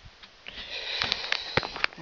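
Breathing noise close to the microphone, a hiss that starts about half a second in and lasts to the end, with a few light knocks over it.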